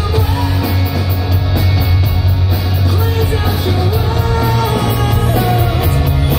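Live rock band playing through a venue PA, heard from the crowd: electric guitars, bass, drums and keyboards with a heavy, steady low end.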